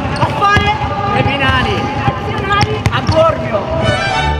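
A basketball bouncing a few times on a hardwood court, sharp irregular bounces under several boys' voices talking and calling out together.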